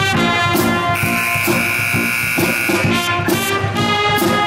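Pep band playing a brass tune: tuba bass notes in a steady rhythm under trumpets and clarinets. About a second in, a loud high held tone comes in on top for about two seconds.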